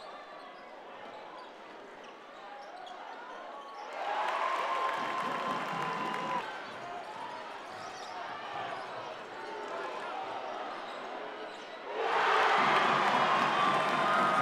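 Basketball game sounds in a large gym: a ball bouncing on the hardwood court amid crowd noise and voices, which get louder about four seconds in and again near the end.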